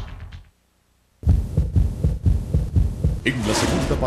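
Closing theme music fades out into a moment of silence. Then a TV promo soundtrack starts with a quick run of loud low thumps, and a rushing sound with musical tones comes in near the end.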